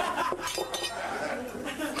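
Glassware clinking on a restaurant table, a few quick clinks in the first second.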